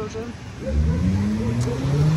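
A car driving by on the street, its engine note rising steadily as it accelerates, starting about half a second in.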